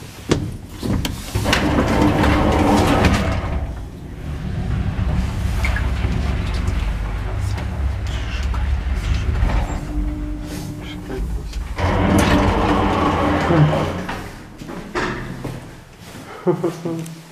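KMZ passenger lift: the automatic sliding doors close with a rolling, rattling run, then the car travels with a low steady hum for about eight seconds, and near the end the doors slide open again.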